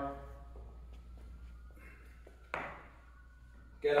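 Quiet metal handling of a transformer squat bar in a rack: a faint ringing tone, then one sharp metal click about two and a half seconds in as the bar's rotating handle frame is set into the safety-squat-bar position.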